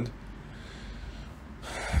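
A man drawing an audible breath in the last half second, over a faint steady low hum.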